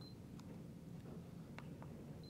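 Stabila LE 50 laser distance meter giving one short, high beep right at the start as a measurement is taken, followed by a few faint clicks.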